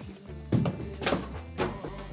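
Background music with a few heavy thumps on top: feet landing on a wooden desktop, the loudest about half a second in and two weaker ones within the next second.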